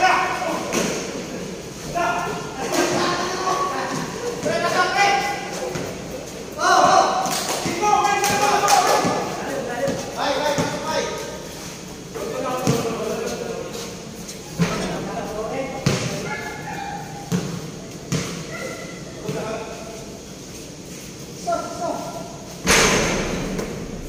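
Basketball game in a large covered court: players' voices calling out, with sharp thuds of the ball on the concrete floor and backboard scattered throughout. A loud, dense burst of sound comes near the end.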